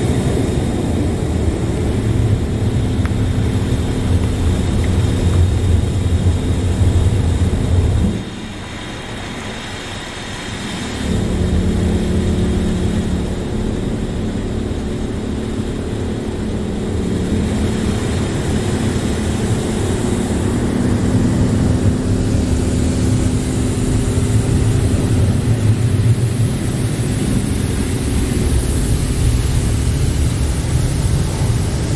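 Belanger Saber touch-free car wash running a pre-soak pass, heard from inside the car: a loud, steady rumble of the machine and its spray on the roof and glass. It drops away about eight seconds in and comes back about three seconds later.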